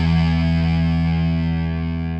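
Distorted electric guitar chord held and ringing out, slowly fading away at the end of a song.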